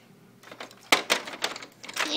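Several sharp plastic clicks and taps, starting about a second in, as a doll is handled against a toy airplane playset.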